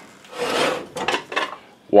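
Antique Wagner cast iron waffle iron scraped across a hard surface as it is picked up: a rasping slide of about half a second, followed by a few light knocks of metal.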